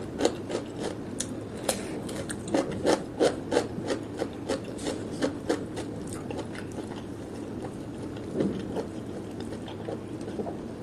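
Close-miked chewing of a mouthful of raw cucumber: rapid crisp crunches, densest in the first six seconds, then thinning out to a few softer ones.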